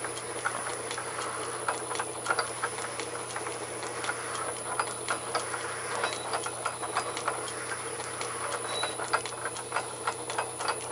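South Bend metal lathe running while a hand-held tapered lap works in the headstock spindle's Morse taper 3 bore with silicon carbide grit and oil. There is a steady machine hum with irregular gritty ticks and scratches as the lap grinds in the taper.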